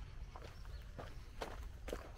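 Footsteps on a sandy dirt track at a walking pace, about two steps a second, over a steady low rumble.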